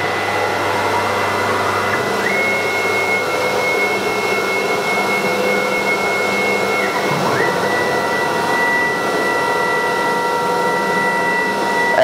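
BCAM S-series CNC router running on its own, its electric spindle giving a steady whirring with a high whine. The whine steps up slightly about two seconds in and drops back a little after about seven seconds.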